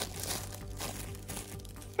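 White tissue paper crinkling in irregular rustles as a small wrapped gift is unwrapped by hand.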